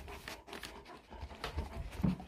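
A dog breathing faintly and irregularly close by, with a few small clicks and rustles.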